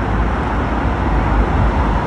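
Loud, steady city-street traffic noise: an unbroken rumbling rush with no single event standing out.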